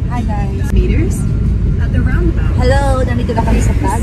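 Steady low rumble of car cabin road and engine noise, heard from inside a moving car, with a woman's voice talking over it in short stretches.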